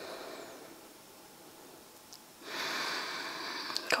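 One long, audible breath, starting a little past halfway through and lasting about a second and a half; fainter breath sounds come at the very start.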